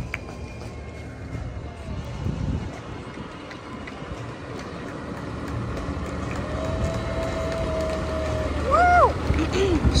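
Fire engine's diesel engine rumbling as the trucks drive slowly past, growing louder over the second half as the next engine approaches. A steady tone is held for about two seconds near the end, then breaks into a short rising-and-falling whoop.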